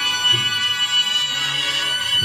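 Cornet and drum band (cornetas y tambores) playing a processional march, with the cornets holding long high notes.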